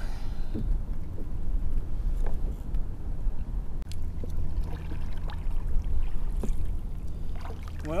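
Wind buffeting the kayak-mounted camera's microphone, a heavy low rumble that turns steadier about halfway through, with a few faint knocks from the kayak.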